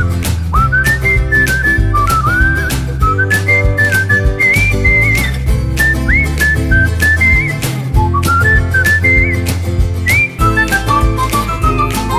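Background music: a whistled melody with little pitch slides over bass notes and a steady beat.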